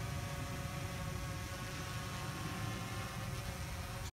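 Quadcopter drone hovering: a steady propeller hum made of several even tones, over a low rumble.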